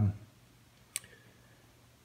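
A single sharp metallic click about a second in as a small steel bracket is handled on the bench, with a faint ring after it.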